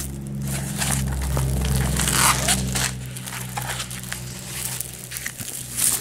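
Crinkling and rustling of the clear plastic film over a rolled diamond painting canvas as it is unrolled and pressed flat by hand, in irregular crackles.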